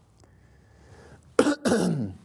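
A man coughing twice in quick succession into his fist, near the end.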